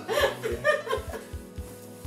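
A man and a woman laughing together for about a second, over background music with a steady low beat.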